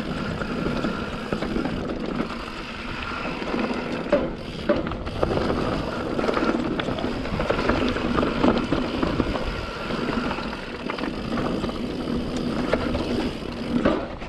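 YT Capra enduro mountain bike rolling fast down a dirt and rock trail: steady tyre and drivetrain noise with a faint hum, chain and frame rattle, and sharp knocks from bumps and rocks several times along the way.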